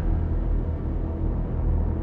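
Dark background music: a steady, low rumbling drone with faint held tones above it.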